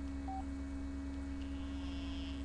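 A single short beep from a cell phone about a third of a second in, over a steady electrical hum.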